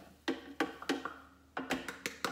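A plastic measuring cup tapped repeatedly against a food processor's plastic bowl to knock nutritional yeast flakes out: a run of sharp taps, about three a second.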